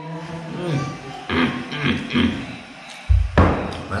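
A man murmuring appreciative "hmm" sounds with his mouth full while eating. About three seconds in there are a few heavy thumps, as of something knocked against the table.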